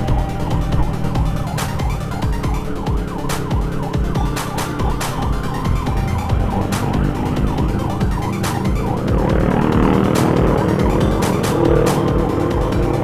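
Ambulance siren sounding just ahead over traffic and engine noise, with background music mixed in; the siren gets louder over the last few seconds.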